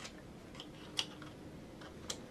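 Small hard plastic clicks from a camera clip mount being pushed onto a cap brim and handled, one sharper click about a second in among a few fainter ones. The clip is very stiff.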